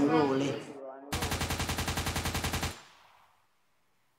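A man's voice for about a second, then a rapid, even rattle of sharp clicks, about ten a second, like machine-gun fire. It lasts about a second and a half and cuts off suddenly into silence.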